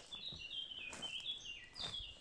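A songbird singing in the forest: a run of short high notes stepping down in pitch over about two seconds.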